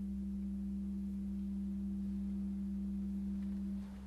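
Organ holding a steady chord over a low bass note, released just before the end and dying away.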